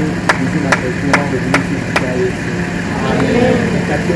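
A group of children and adults singing together with rhythmic hand clapping, about two to three claps a second, the clapping stopping about halfway through. Underneath runs the steady hum of a vehicle engine idling.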